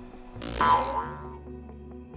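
A sudden swoosh-and-hit transition sound effect about half a second in, its ringing tone dying away over about a second, over quiet background music.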